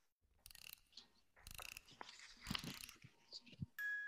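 Faint rustling and bumps of a person moving about, in a few short bursts, heard through a video-call microphone.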